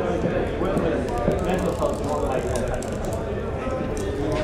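Crowded tavern: many people talking over one another in a steady hubbub of chatter, with scattered small knocks and clicks throughout.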